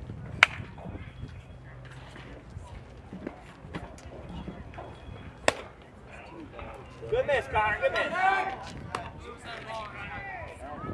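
Two sharp cracks about five seconds apart, the first the louder, typical of a baseball smacking into a catcher's mitt on a pitch. Voices call out from the field for a couple of seconds near the end.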